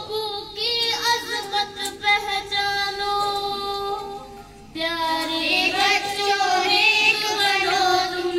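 A group of girls singing a song together, holding long notes; the singing breaks off briefly a little past halfway, then the next line begins.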